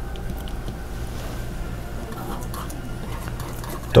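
Palette knife lightly tapping and dabbing paint onto canvas: faint, scattered small clicks and scrapes over a steady low hum.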